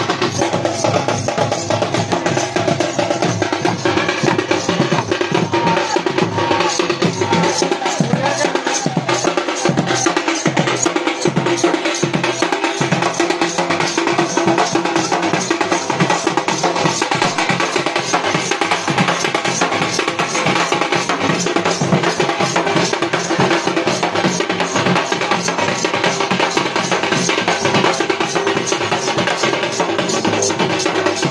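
Live folk dance music: double-headed barrel drums beaten in a fast, steady rhythm, with a sustained melodic line running above the drumming.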